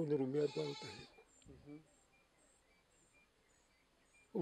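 An elderly man's wavering, drawn-out vocal sound, about a second long at the start.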